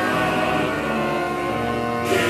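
A large live ensemble of strings and winds holding a dense, sustained chord, many notes sounding together without a break.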